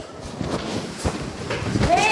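Scuffling and hurried footsteps of a group of people moving through a doorway, with indistinct men's voices; a man's voice comes in near the end.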